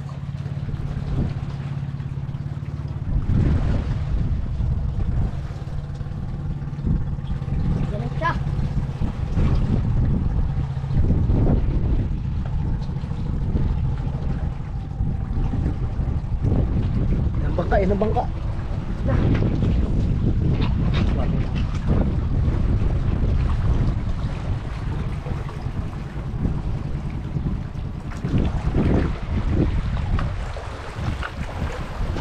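Wind blowing over the microphone, with the steady low hum of a boat engine that fades out about halfway through. A couple of short shouts break in around the middle.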